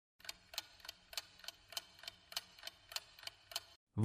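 Clock-ticking sound effect used as a quiz countdown timer: faint, even ticks, about three a second, stopping just before the answer is given.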